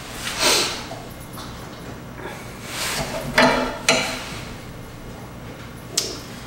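Metal parts of an old golf cart engine being handled by hand: a few short scraping rustles and light clinks, with two sharp clicks about half a second apart near the middle.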